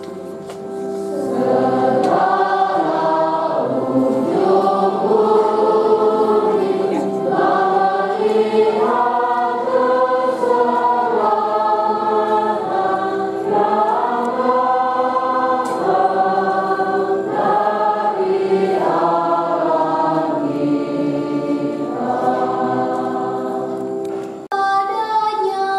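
Church choir singing with instrumental accompaniment, plausibly the responsorial psalm sung between the first and second Mass readings. The voices come in fuller about a second and a half in and carry on over steady held chords.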